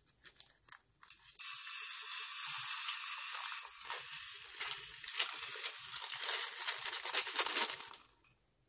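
Tiny beads pouring from a cut piping bag onto a glass dish: a dense, hissing patter of countless small ticks that starts about a second and a half in, thins into looser ticking later on and stops suddenly just before the end. Before it, a few light clicks as the bag's tip is cut with scissors.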